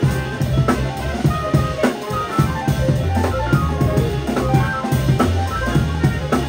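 Live jazz band playing: drum kit, upright bass, electric guitar and trumpet.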